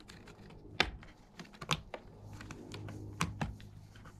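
A cat moving about inside a cardboard box, its paws and claws tapping and scraping on loose cardboard sheets in irregular light clicks, the sharpest about a second in and again after three seconds.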